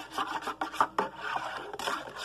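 Hot chocolate being stirred briskly in a metal cup, the utensil scraping round the cup's sides in quick repeated strokes, with a couple of sharper clinks about a second in.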